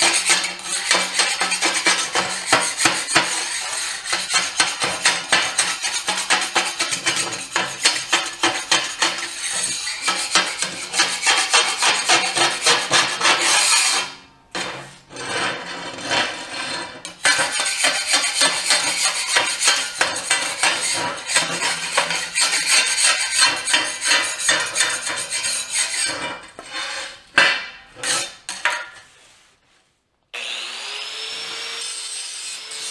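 Flat hand scraper dragged hard over the surface of a steel plate panel, a fast, continuous rasping run of strokes as the metal is cleaned up. It stops briefly about halfway through, then resumes, and near the end it breaks into a few scattered strokes.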